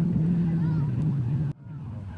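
A steady low engine hum with voices in the background, cut off abruptly about one and a half seconds in.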